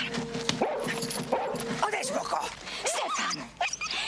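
A dog barking and yelping repeatedly.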